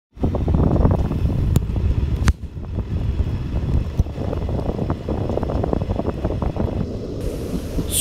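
Low, steady rumble of a train in motion, with wind buffeting the microphone and a few sharp clicks in the first half.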